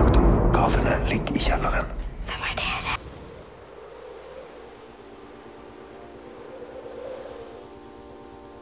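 Loud, dense film-soundtrack audio with a strong low rumble that cuts off abruptly about three seconds in. It gives way to a quiet, steady ambient bed of soft sustained tones.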